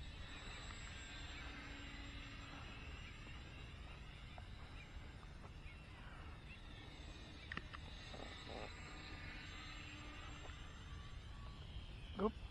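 Faint whine of a small RC plane's 1806 brushless motor and propeller, its pitch slowly sweeping up and down as the plane flies around, over a low wind rumble on the microphone.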